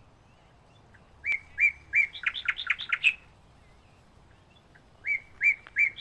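A songbird singing the same short phrase twice, about four seconds apart: a few separate notes that quicken into a fast run of chirps.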